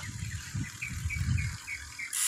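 A bird calling a quick run of about six short chirps in the middle stretch, over a low rumble of wind on the microphone.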